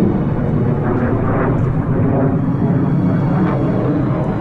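Military jet aircraft flying overhead in formation: a loud, steady rumble of jet engines.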